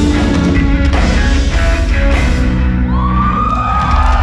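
A live rock band with drums and electric guitars playing the closing bars of a song, the drum hits stopping about two and a half seconds in. Near the end the audience starts cheering and whooping.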